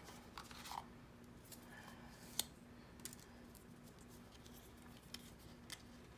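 Faint handling of a small cardboard box and paper instruction booklet: a few light clicks and rustles, the sharpest about two and a half seconds in, over a faint low pulsing hum.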